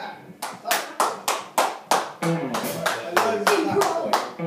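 A small group clapping in a small room, a thin run of sharp handclaps about four a second, with voices under them.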